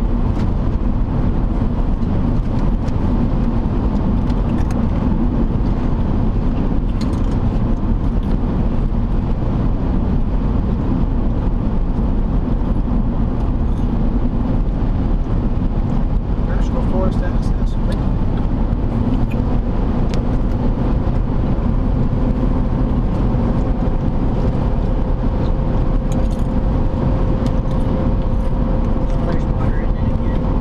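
Steady road and engine noise of a car driving at cruising speed, heard from inside the cabin: a constant low rumble of tyres and engine. A faint steady hum joins about two-thirds of the way through.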